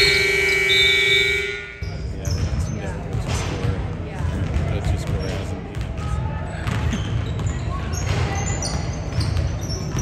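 A gym scoreboard horn sounds one steady, loud tone that cuts off about two seconds in. After it, basketballs bounce on the hardwood court, with voices echoing in the large gym.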